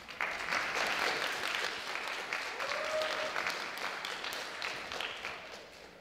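Audience applauding, starting all at once and thinning out toward the end.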